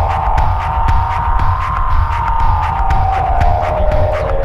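Experimental electro music built from sampled old-school electro record loops: a heavy bass pulse and a steady percussive beat under a sustained synthesizer tone that slowly drifts in pitch.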